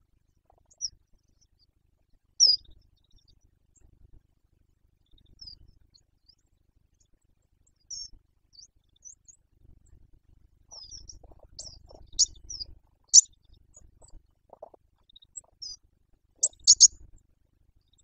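Small birds calling: scattered short, high-pitched chirps and thin notes, coming thicker and louder in the second half, over faint low rumbling at times.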